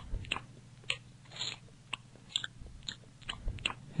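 Cartoon eating sound of a goldfish munching fish food: irregular wet chewing and small crunches, a dozen or so scattered clicks over a low steady hum.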